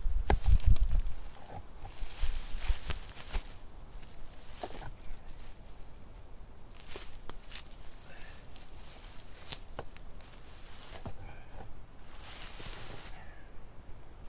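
A large flat stone dropped heavily onto the ground with a deep thud about half a second in, then scattered knocks and scrapes of stone on stone and rustling of dry leaves underfoot as it is shifted into place in a fire-pit ring.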